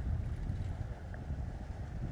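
Wind buffeting the microphone: an uneven, low rumble with little else above it.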